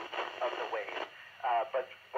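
Speech only: a man's voice received over the radio from the International Space Station on a 145.800 MHz FM receiver. It sounds narrow and tinny, like a radio voice, and breaks off briefly about halfway through.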